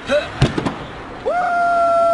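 A sharp thud with two or three quick knocks, then a car horn sounding one steady honk of about a second and a half that sags in pitch as it stops.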